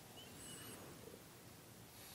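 Near silence: quiet room tone with one faint, high bird chirp about half a second in.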